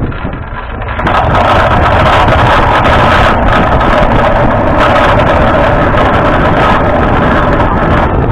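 Loud, steady rushing noise of a human-powered aircraft rolling at speed along a runway: air rushing over the onboard camera's microphone, mixed with the rumble of the landing wheel on asphalt. It grows louder about a second in as the aircraft gathers speed.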